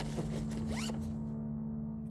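Zipper on a soft cooler bag being pulled shut: a short scratchy rasp that lasts about a second, over a low, steady musical drone.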